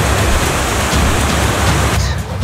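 Whitewater rapids rushing, a steady loud noise of churning water with a low rumble beneath it.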